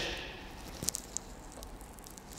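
Quiet room with faint rustling and a few soft clicks about a second in, from two people moving their bodies on yoga mats during an abdominal exercise.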